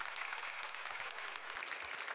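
Studio audience applauding, a steady patter of many hands clapping.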